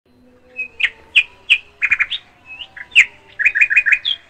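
A small bird chirping: short, sharp, downward-slurred notes, some single and some in quick runs of three or four.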